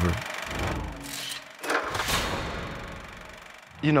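Produced sound-effect transition: a low rumble with a whoosh swelling about two seconds in, then dying away before a voice comes in at the end.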